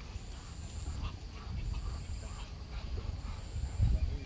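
Outdoor ambience dominated by wind rumbling on the microphone. A faint, thin, high-pitched tone comes and goes about every second and a half.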